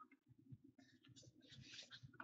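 Near silence, with faint rustling of a cardboard trading-card box being handled near the end as its lid is taken hold of.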